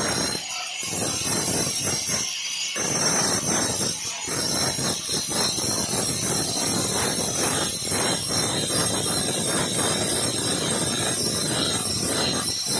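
Hand-held angle grinder with an abrasive disc grinding the edge of a granite stair tread to shape a rounded molding: a loud, steady grinding screech as the disc rubs the stone. It eases off briefly twice in the first three seconds.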